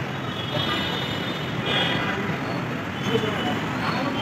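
Steady city traffic noise, with a short car horn toot about two seconds in.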